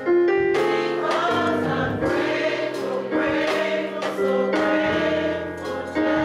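Mixed-voice gospel choir singing in harmony, holding long notes that move to a new chord every second or so.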